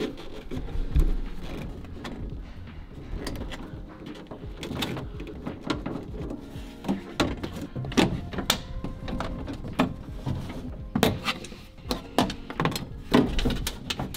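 Hands working wiring and a rubber grommet on a VW T5 van's metal door carrier panel: scattered clicks, knocks and light rattles of plastic and metal, coming more often in the second half.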